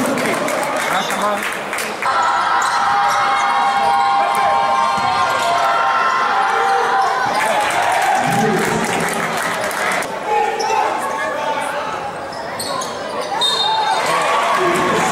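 Basketball being dribbled on a hardwood court during play, the bounces echoing in a large gym. Voices in the hall run under it, with a held, sustained voicing for several seconds in the first half.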